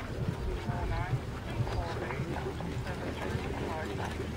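Indistinct voices talking in the background, with a steady low rumble of wind on the microphone.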